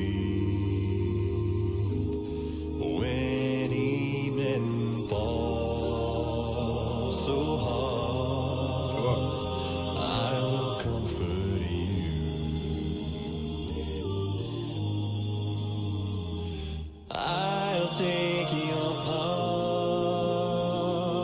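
A cappella vocal music: a deep bass voice sings long, low sustained notes over layered voices in close harmony. The sound drops out briefly near the end.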